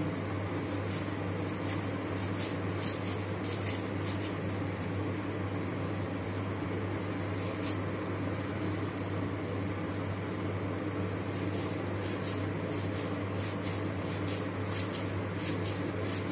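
Steady low electrical hum, with a few faint soft clicks scattered through it.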